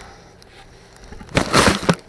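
A brief rustling scrape of about half a second, a little past the middle, as a wooden board is pushed and scraped through fibreglass insulation.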